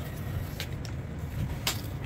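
Two faint clicks of hard gear being handled: a rifle with a weapon light and pressure switch being turned over in gloved hands, over a low steady hum.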